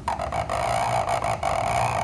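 Scratching of a cut-nib calligraphy pen (qalam) dragged across paper as it draws one continuous ink stroke lasting about two seconds.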